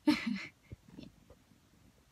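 A woman's short, breathy laugh about half a second long, followed by a few faint small clicks.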